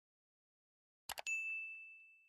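A double mouse-click sound effect about a second in, followed at once by a single bright bell ding that rings out and fades away. These are the click and notification-bell sound effects of a subscribe-button animation.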